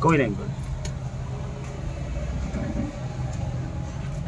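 A short falling vocal sound right at the start, then a steady low hum of a running motor, with faint voices behind it.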